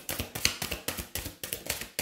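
A deck of angel oracle cards shuffled by hand: a quick, irregular run of soft card clicks and taps.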